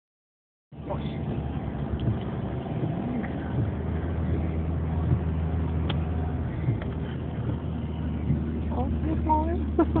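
Car cabin noise while driving: a steady low engine and road drone heard from inside the car, starting about a second in.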